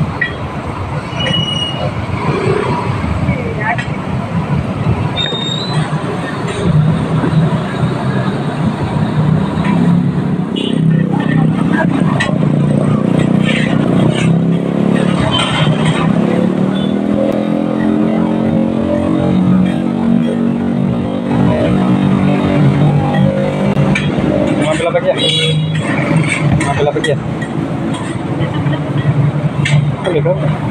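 Roadside traffic noise: motor vehicle engines running on the street, one rising and falling in pitch through the middle, over beef patties and an egg frying on a flat-top griddle, with indistinct voices.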